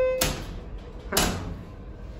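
Elevator car button beep as a floor or door button is pressed: one short steady electronic tone with overtones, under half a second long, followed about a second later by a single clunk.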